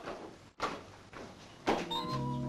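A door shutting about half a second in, followed by quiet room noise; music starts just before the end.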